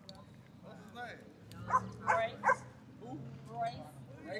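A small poodle barking three times in quick succession, short sharp barks about half a second apart, over faint background voices.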